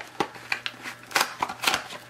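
Irregular light clicks and rustling of objects being handled, about seven sharp ticks in two seconds.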